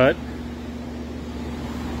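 A steady low hum of a running machine, with one faint steady tone above it and no strikes or cutting.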